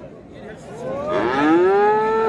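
A calf mooing: one long call that starts about half a second in, rises in pitch and then holds steady.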